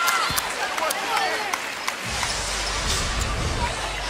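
Arena sound at a basketball game: a ball bounced on the hardwood court with crowd noise around it, a few sharp knocks in the first two seconds, and a deeper steady background swelling up about two seconds in.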